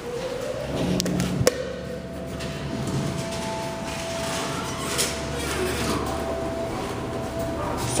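Montgomery elevator running: a steady mechanical whine that rises over the first second or so, holds level and stops a little before the end, over a low rumble, with a sharp knock about a second and a half in.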